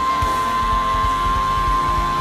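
Worship song music: a single high note held steady over the band's accompaniment and a repeated low beat.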